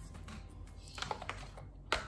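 A few light clicks and taps from handling small plastic makeup packaging, with one sharper click near the end.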